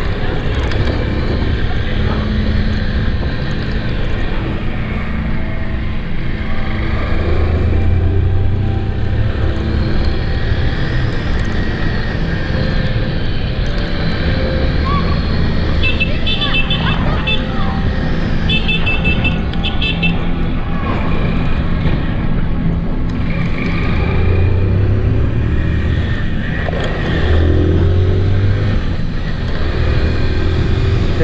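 Vehicle engine running under a heavy rush of wind on the microphone while riding at speed. The engine's low note swells and eases several times, around 8, 15, 25 and 28 seconds in.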